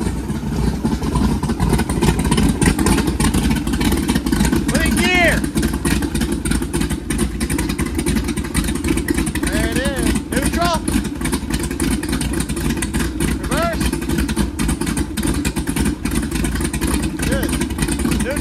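Freshly built 551 hp small-block Chevrolet stroker V8 in a sterndrive boat running on its first start-up, with a steady, choppy exhaust note. Cooling water sprays out of the sterndrive onto the concrete.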